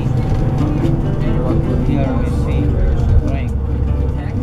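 Low, steady engine and road rumble inside a moving tour bus, with music and voices over it.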